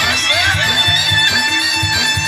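Loud timli dance music from a live band over loudspeakers: a high lead melody sliding between notes over a steady low drum beat.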